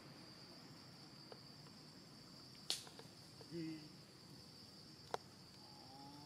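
Steady high-pitched insect drone over faint forest background. There are two sharp clicks, about three and five seconds in, and a brief low voiced sound between them.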